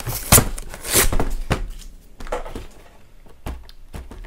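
Cardboard Pokémon card collection box being pried open, its stuck-together cardboard scraping and rubbing in several short rasps, the loudest in the first second and a half. The box is stuck fast and resists opening.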